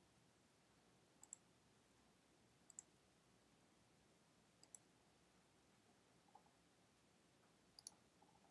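Faint computer mouse clicks: four short double clicks spread through a near-silent room, each a quick press-and-release pair.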